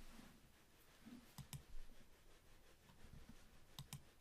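Near silence broken by a few faint computer mouse clicks, coming in two close pairs about a second and a half in and near the end.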